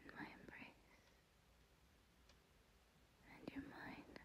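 A woman whispering softly in two short phrases, one at the start and one near the end, with a few faint clicks in between.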